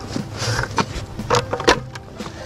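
Topsoil being poured from a plastic bucket into a raised bed: a brief rustling hiss of soil sliding out, followed by three knocks, likely the bucket being tapped or handled.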